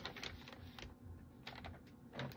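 Faint, irregular clicks and taps, thickest in the first second and sparser after.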